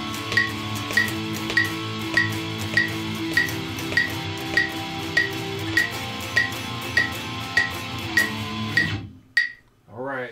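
Electric guitar strumming a chord exercise of power chords and a sus2 chord in a steady sixteenth-note pattern with many upstrokes, over a metronome click about every 0.6 seconds (about 100 beats a minute). The playing stops about nine seconds in, with one more click after it.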